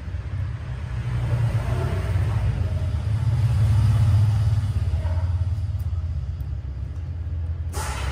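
A low rumble that swells to its loudest about halfway through and then eases off, with a sharp click near the end.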